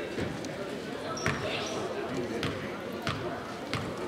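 A basketball bounced four times on a hardwood gym floor, the last three about two-thirds of a second apart, over a background of gym chatter and voices.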